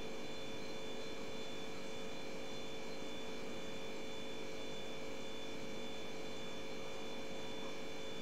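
Steady electrical hum with hiss: background noise of the recording with a few constant high tones, unchanging throughout.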